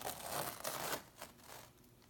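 Painter's tape being peeled off a painted canvas: a rough tearing sound that dies away about a second in.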